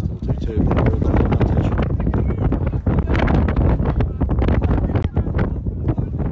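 Wind buffeting a phone's microphone: a loud, gusting low rumble.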